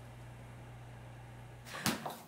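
Steady low hum of a running freezer, its door open, with no speech over it. A brief sharp swish or knock cuts in near the end.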